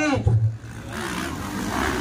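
Motocross dirt bike engines revving on the track, building and rising in pitch from about a second in. A PA announcer's voice trails off at the start.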